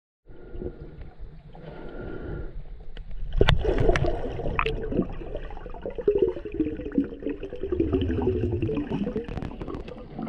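Water moving and sloshing, with a few sharp knocks about three and a half to four and a half seconds in.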